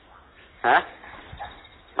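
A dog barking twice: two short, loud barks about a second and a half apart.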